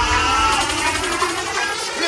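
Drum and bass mix in a breakdown: the heavy bass drops away about halfway through, leaving mostly thin high sounds.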